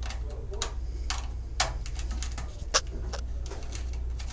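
Small screwdriver tightening a wire into a screw terminal on an alarm panel's circuit board: a run of light, irregular clicks and ticks, two sharper ones about one and a half and two and three-quarter seconds in, over a steady low hum.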